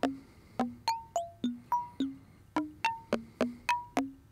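Mutable Instruments Rings resonator in a Eurorack modular synth playing a sequenced run of short, mallet-like notes, about three or four a second. The notes hop between a low pitch and higher ones, each starting with a click and dying away quickly. Random modulation of the shape and position settings varies the tone from note to note.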